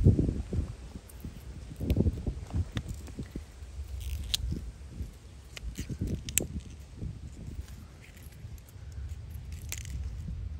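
Pea vines rustling and pods being snapped off by hand: irregular soft handling noise with a few low bumps, the loudest right at the start, and scattered short crisp clicks.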